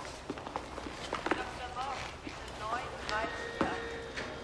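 Footsteps on a hard floor with faint background voices. A steady tone comes in about three seconds in.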